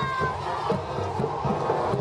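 A group of cheerleaders chanting and shouting a cheer together, over a steady low beat.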